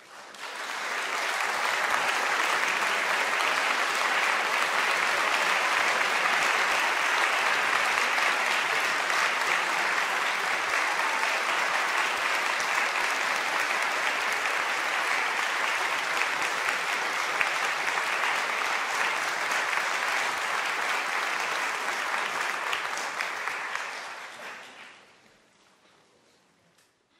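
An audience applauding: a steady round of clapping that builds within the first second, holds, and fades away near the end.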